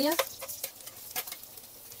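Boiled potato and carrot cubes tipped from a stainless steel steamer basket onto a hot oiled griddle, landing with scattered clicks and knocks and starting to sizzle as they begin to brown.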